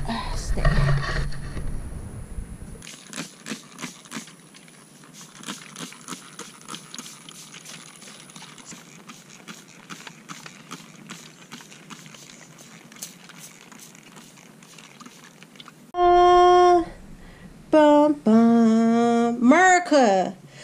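Craftsman cordless drill whining in three short bursts near the end, driving screws to mount a barrel bolt latch on a wooden gate; the last, longest burst runs at a lower pitch. Before that, only faint scattered clicks and ticks.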